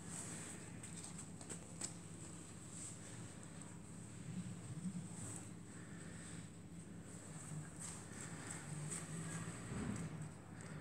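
Faint soft dabs and a few light clicks of a silicone pastry brush spreading egg wash over croissant dough and dipping into the bowl, over a low steady hum.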